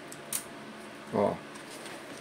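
A single short, light click as a screwdriver and wires are handled at a contactor's terminals.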